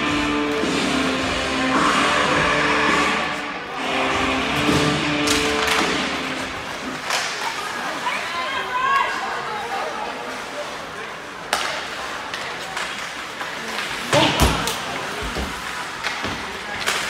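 Rink PA music playing over spectators' chatter and a laugh, with the music stopping about a third of the way in. After that come the noises of hockey play in a large arena, including sharp knocks of stick and puck, one around two thirds of the way in and a cluster near the end.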